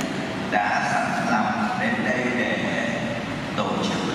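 A man speaking Vietnamese into a handheld microphone, amplified over a public address system.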